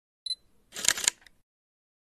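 Camera shutter sound effect: a short high beep, then the quick clicking of the shutter about a second in, against otherwise dead silence.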